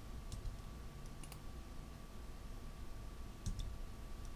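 A few faint, scattered clicks of a computer mouse and keyboard as schematic labels are dragged and placed, over a faint steady whine.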